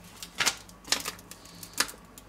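A wooden spoon knocking against a stainless steel saucepan as it is tapped and laid in the pot: three sharp clicks, about half a second, one second and nearly two seconds in, with a few fainter ticks between.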